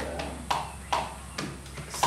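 A spoon stirring liquid in a plastic bowl, knocking against the bowl's side about three times, with a low hum underneath.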